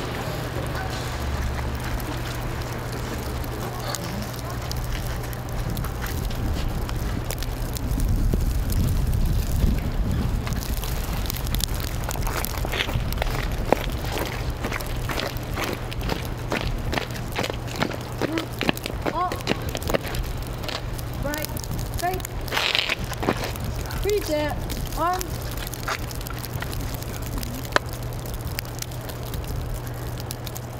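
Outdoor ambience picked up by an open microphone: a steady low electrical hum, a rumble of wind on the microphone about a third of the way in, then many scattered sharp clicks and a few faint, distant voices.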